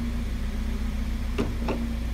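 Hyundai Genesis Coupe 2.0T's turbocharged four-cylinder engine idling with a steady low hum. Two light clicks near the end as a gloved hand presses and pries at the fuel filler door.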